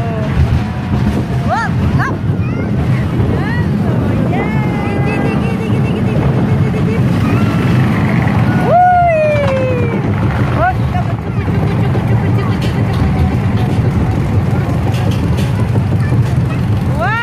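Kiddie caterpillar roller coaster running, with a steady rumble of the car on its track and several short high-pitched squeals scattered through, the loudest about nine seconds in.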